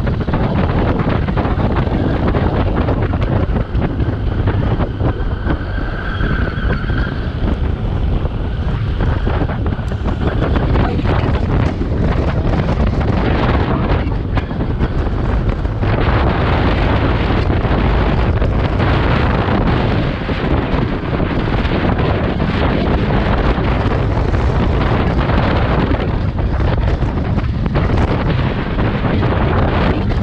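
Loud, steady wind buffeting on the microphone of a camera riding on a moving motorcycle, with the motorcycle's running and road noise underneath.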